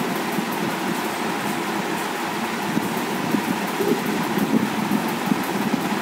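Steady background noise: an even rush with a faint hum, unchanging throughout and with no distinct events.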